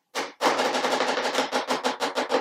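Improvised drum roll tapped out by hand on a box: one tap, then from about half a second in a fast, even run of taps, about ten a second.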